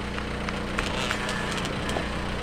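Small 65cc dirt bike engine running at a steady, even pitch some way off, not revving, with a few faint clicks.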